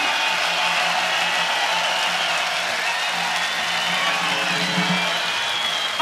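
Electric guitar and amplifier sound lingering at a live heavy metal concert between songs, over a steady crowd noise, with faint thin wavering tones on top.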